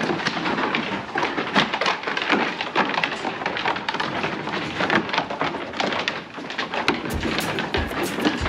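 Many sheep shuffling and jostling on a wooden slatted floor, their hooves making a dense clatter of small knocks. Deeper thumps join in near the end.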